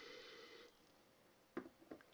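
A faint sip of soda from a glass mug, a soft noisy sound lasting under a second, then two brief soft clicks near the end.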